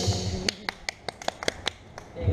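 A quick, evenly spaced run of about seven sharp taps, roughly five a second, starting about half a second in.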